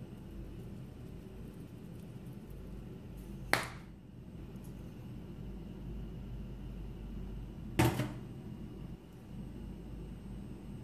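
Two sharp clicks about four seconds apart as spice jars are handled over the pan, over a low steady hum of room noise.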